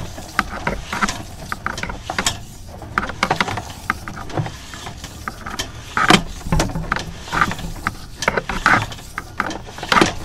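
Sewer inspection camera's push cable being fed along a drain line: irregular clicking and knocking from the cable and reel as it goes, with a few louder knocks after about six seconds.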